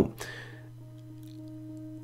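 A steady low hum with fainter, higher steady tones over it, and a soft breath just after the start.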